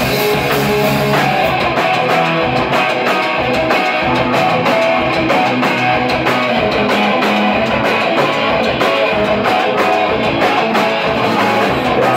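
A rock band playing live and loud: electric guitars over a steady, driving drum beat, with no vocals.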